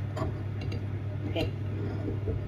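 A metal spoon scraping and clicking softly against a ceramic bowl while scooping cooked rice, twice in the first second, over a steady low hum.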